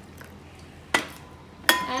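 Two sharp clinks of a steel bowl and metal tea strainer on a glass teapot and tray, about a second and three-quarters of a second apart. The second is louder and rings on briefly.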